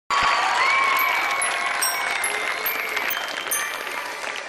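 Studio audience applauding, a dense patter of many hands clapping. A long high-pitched held tone rides over the clapping from about half a second to three seconds in.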